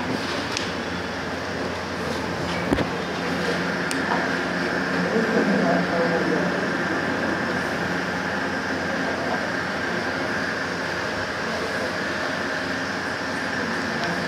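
Steady background hum and hiss, with faint distant voices and one sharp click about three seconds in.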